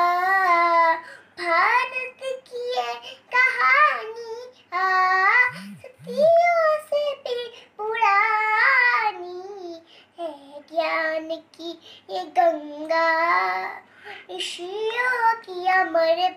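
A young girl singing a Hindi devotional song unaccompanied, in a high child's voice, in short phrases with brief pauses between them.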